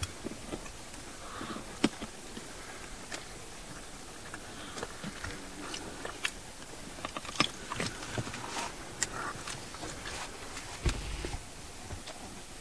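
Spotted hyena chewing and crunching on a giraffe carcass: irregular sharp cracks and clicks of biting on bone and hide, with a dull thump near the end.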